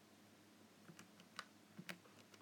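Faint, irregular key clicks, about five in two seconds, against near silence.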